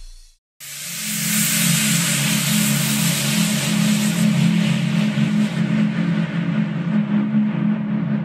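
Logo-reveal sound effect: after a brief silence, a sudden loud rush of hiss over a steady low rumbling drone, the hiss slowly fading while the drone carries on.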